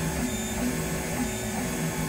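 Large DIY 3D printer mid-print: its Nema23 stepper motors drive the print head in short moves, giving a whine in brief steady tones that change pitch every few tenths of a second.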